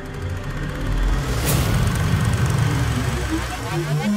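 Logo-animation sound effect: a rushing whoosh that swells about a second in over a deep rumble, followed near the end by quick rising electronic tones.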